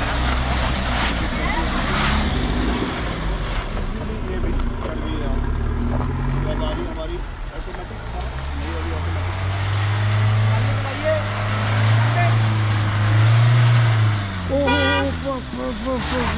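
Mahindra Thar engine working under load through mud and up a steep slope: a steady low drone that rises in pitch and loudness about halfway through and holds for several seconds before easing. Voices shout near the end.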